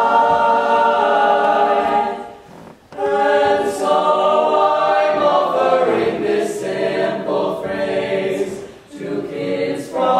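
Eight-voice a cappella barbershop group of teenage boys singing sustained close-harmony chords, with a short break for breath about two and a half seconds in and a brief dip near the end.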